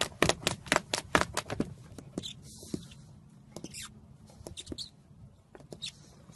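A puppy's claws scrabbling and tapping against the side of a plastic tub: quick sharp clicks, about six a second at first, thinning to scattered taps after about two seconds.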